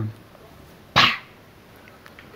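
A single short vocal burst from a person, like a brief laugh or exclamation, about a second in, set in otherwise quiet studio room tone.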